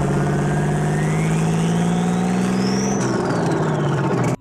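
Logo-animation sound effect: a steady, loud, engine-like drone with a whistling tone that rises for about three seconds and then falls away.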